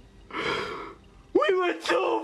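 A man's gasping, sobbing breath, then about two-thirds of the way in a high, wavering cry in an emotional, weeping reaction.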